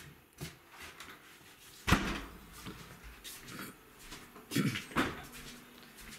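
A door bangs once, sharply and loudly, about two seconds in, followed by a couple of quieter knocks or creaks around five seconds in as someone moves through the doorway.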